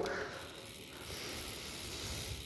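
Novatec D792SB four-pawl rear hub freewheeling as the wheel spins on a stand, giving only a faint, soft whir with hardly any audible clicking. The owner puts the near-silence down to too much grease inside the hub.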